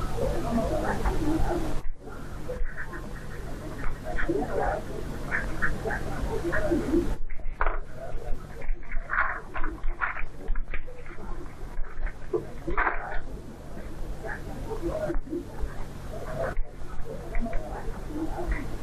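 Low, indistinct voices murmuring over a steady low hum in the soundtrack. The sound drops out briefly a few times.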